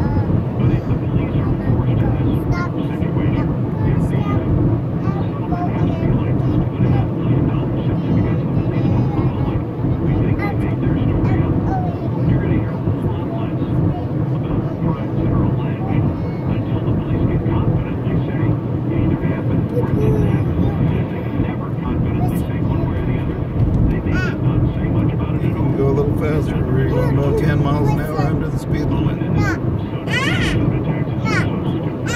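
Steady rumble of a car's engine and tyres on the road, heard from inside the cabin while driving at road speed.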